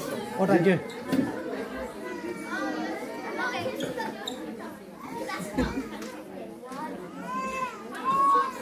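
Children playing, with excited high-pitched calls over a mix of children's and adults' chatter in a large hall.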